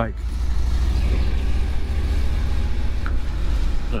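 Harley-Davidson touring motorcycle's 1700 cc V-twin engine running steadily under way, an even low engine note heard from the rider's seat with road and wind noise over it.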